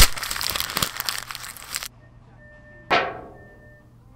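Cartoon sound effects: a sudden hit opens a rushing hiss that cuts off after about two seconds. About three seconds in comes a single sharp strike that rings and fades.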